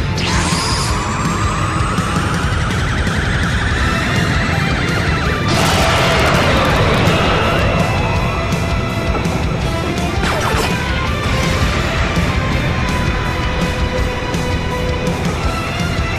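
Dramatic background music with a steady beat, laid under cartoon energy-attack sound effects: a rising charge-up whine over the first five seconds, then a loud blast about five and a half seconds in and another near ten and a half seconds.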